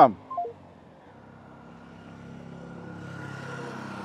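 A few short phone beeps stepping down in pitch as a phone call ends, followed by a steady hum that slowly grows louder.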